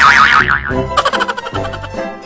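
A comedic sound effect with a rapidly wobbling pitch, then music with a regular beat starting under a second in.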